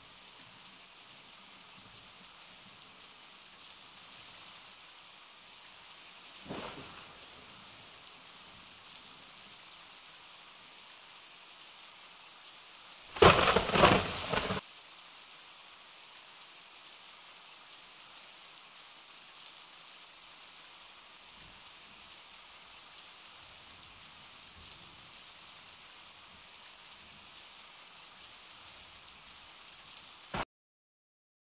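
Rain falling steadily with a soft, even hiss. A faint rumble comes about six seconds in, then a loud crack of thunder lasting about a second and a half near the middle.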